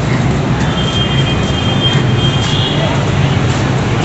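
Steady street traffic noise with a low hum, and a faint high-pitched tone for about two seconds in the middle.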